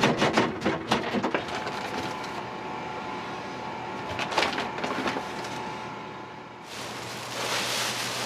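Clattering knocks and scraping of a plastic scoop and containers at a flour bin, then a quieter stretch over a steady machine hum with a short rustle of flour being scooped from a paper sack about four seconds in. Near the end a louder, even rustling hiss takes over.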